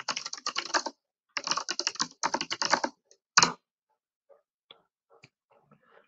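Fast typing on a computer keyboard: two runs of keystrokes over the first three seconds, then one separate key press about three and a half seconds in, followed by only a few faint clicks.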